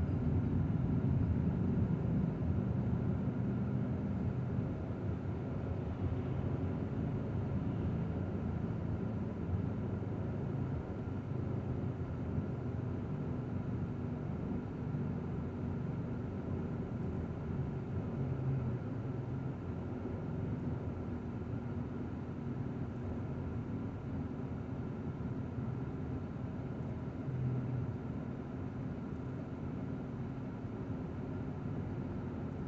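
A car driving along a road, heard from inside the cabin: a steady low hum of engine and tyres.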